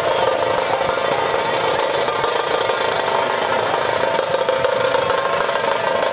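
A troupe of large dhol barrel drums beaten with sticks, playing a fast, dense, unbroken rhythm.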